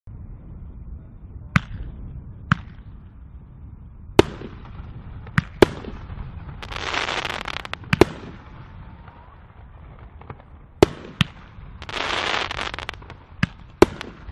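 Aerial consumer firework going off: about ten sharp bangs, irregularly spaced, from shots launching and breaking overhead. Two second-long bursts of crackling hiss come about seven and twelve seconds in.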